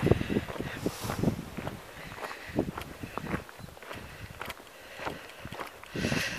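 Footsteps on a gravel track at a walking pace, a run of short crunching steps.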